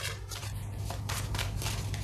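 Tarot cards being shuffled by hand: a rapid, uneven run of quick card flicks over a low steady hum.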